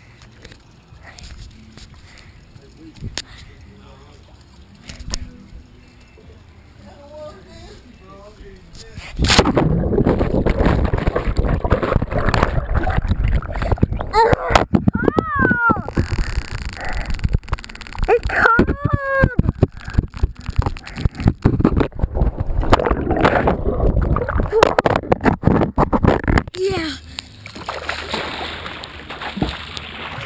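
Pool water splashing and churning around a camera taken into a swimming pool. The sound starts suddenly and loudly about nine seconds in and stops abruptly a few seconds before the end. Two short voices or cries rise and fall over the water noise partway through.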